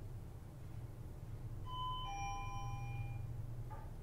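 Two-tone doorbell chime: a higher ding followed about half a second later by a lower dong, both fading out within about a second and a half.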